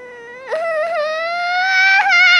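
A child's high-pitched voice in a long, unbroken wail, mock crying in character. It starts softly, grows louder about half a second in and slowly rises in pitch.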